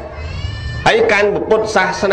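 A man's voice preaching a Buddhist sermon in Khmer: one long held vowel for about the first second, then speech resumes with rising and falling pitch.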